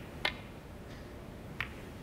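Snooker cue tip striking the cue ball with a sharp click, then about a second and a half later a softer click as the cue ball hits the red it pots.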